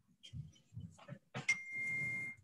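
A sharp click, then a single steady, high electronic beep lasting just under a second over a burst of hiss, about a second and a half in.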